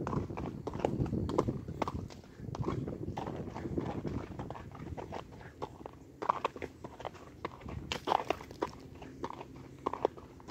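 Hoofbeats of a walking horse on a wet gravel road, a run of sharp uneven clicks that is louder in the first few seconds.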